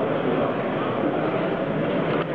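Steady background babble of many voices in a busy trade-fair hall, with no single sound standing out.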